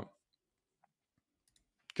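Near silence, with a few faint, short clicks just before speech resumes near the end.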